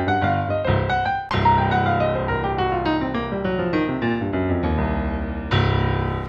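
Digital piano playing a swung boogie-woogie left-hand pattern while the right hand improvises on a C blues pentascale in runs that tumble downward. It ends on a loud final chord near the end that rings and fades.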